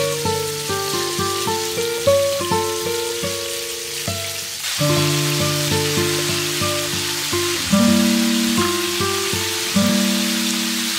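Background music with a melody of single notes, over beef strips sizzling in hot oil in a frying pan. The sizzle gets louder about halfway through, once the pan is full of meat.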